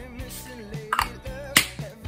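Background music: a pitched melody over a steady bass, with sharp snap-like percussion strokes about one second and about one and a half seconds in; the second stroke is the loudest.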